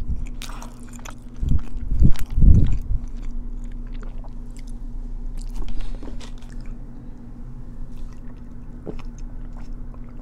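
Close-miked chewing of a crunchy Korean corn dog, loudest in a run of bites and chews in the first three seconds, then quieter mouth sounds and small clicks.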